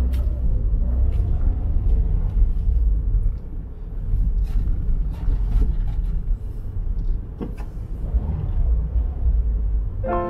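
Car cabin noise while driving slowly over a packed-snow road: a steady low rumble from the engine and tyres, with occasional light clicks and knocks.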